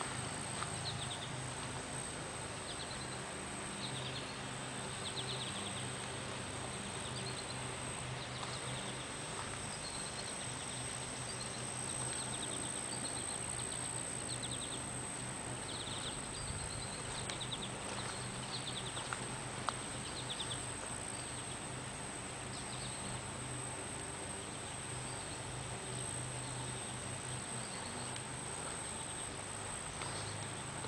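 Summer garden ambience: a steady background hiss with short, high, buzzy chirps repeating every second or two.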